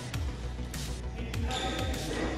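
Badminton rally: a few sharp strikes of rackets on the shuttlecock, with footfalls on the court, over background music.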